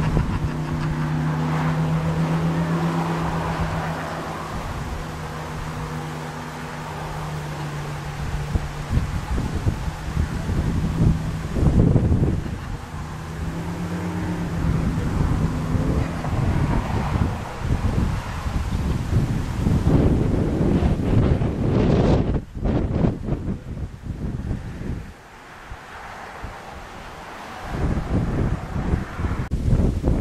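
Wind gusting on the microphone, over a steady low motor-like hum that stops about twelve seconds in. The hum returns briefly, and then the gusts take over.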